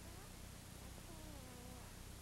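Faint steady hiss and low hum of an old film soundtrack, with a few faint pitched glides falling in pitch about a second in.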